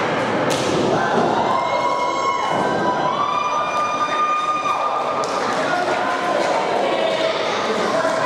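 A wrestler's body hitting the ring mat with one sharp thump about half a second in, followed by long drawn-out shouts from spectators.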